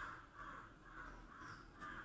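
Faint bird calls: one short call repeated about three times a second.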